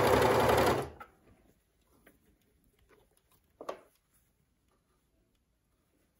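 Overlocker (serger) running fast as it stitches a neckband seam, stopping suddenly under a second in. After that there is only faint fabric handling, with one short rustle or click a little after three and a half seconds.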